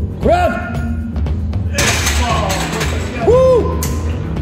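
Background music with a heavy bass beat throughout. About two seconds in, a burst of metal clanking as a heavily loaded barbell is set back in the bench rack, with short voice calls near the start and near the end.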